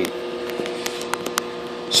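Heathkit SB-220 linear amplifier powered up and idling, its cooling fan running with a steady hum. A few faint clicks come about halfway through.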